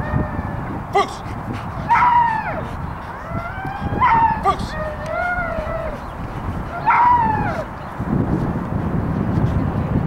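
A dog giving short, high-pitched whining yelps, three times a couple of seconds apart, each call rising and then falling. A sharp click comes about a second in, and a low rumble of wind or handling noise rises near the end.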